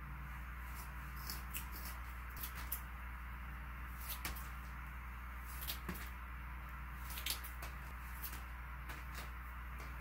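Scissors snipping through a flat of rockwool starter cubes, cutting off single cubes: a string of short, soft, irregular cuts over a faint low room hum.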